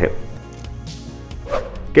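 Soft background music with steady low notes under a short break in a man's Hindi narration; his voice comes back in near the end.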